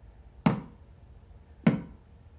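Knuckles of a clenched fist knocking twice on a polished wooden desktop, two sharp raps about a second apart.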